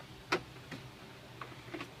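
Clear plastic container being handled: one sharp click about a third of a second in, then a few lighter clicks and taps.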